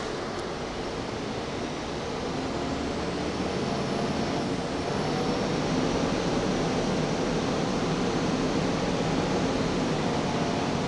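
Inside a Gillig Phantom transit bus under way: steady engine and road noise with the HVAC and cooling fans running, growing louder over the first few seconds and then holding.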